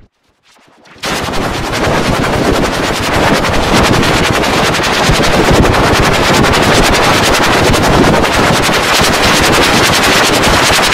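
After about a second of silence, a loud harsh noise starts suddenly: a dense run of very rapid clicks or crackles that keeps going steadily.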